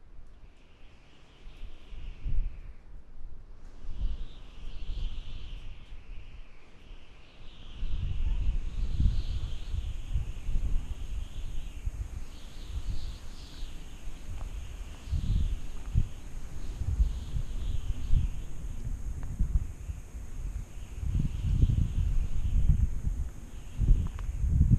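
Wind buffeting the microphone in uneven low gusts, stronger from about eight seconds in, with birds chirping faintly in the background.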